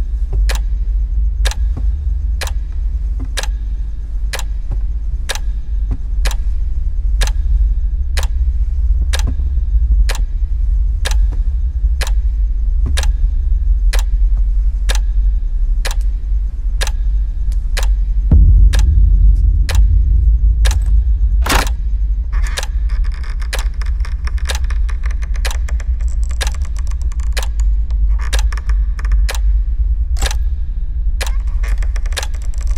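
Horror film sound design: a clock ticking steadily, about three ticks every two seconds, over a deep low drone. About 18 seconds in a low boom swells up, a sharp hit follows a few seconds later, and a high metallic jangling shimmer then runs on under the ticking.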